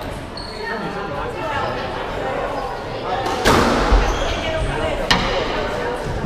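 Squash ball being hit by rackets and smacking off the court walls, ringing in the court's echo: a loud hit about three and a half seconds in with a dull thud just after, and a sharp crack about five seconds in.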